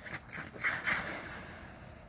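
Winter boots scuffing and sliding on rink ice: a few light knocks and a longer scrape about half a second in.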